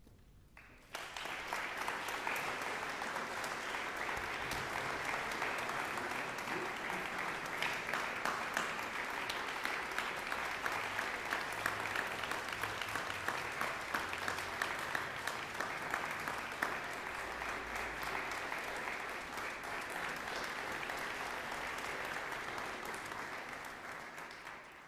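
Audience applause, breaking out suddenly about a second in and continuing as steady, dense clapping at the close of a concert performance.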